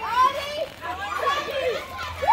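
Children and young people calling and chattering, several high voices overlapping in short shouts.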